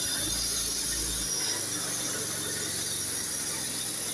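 A steady high-pitched buzz running throughout, with low wind rumbles on the microphone.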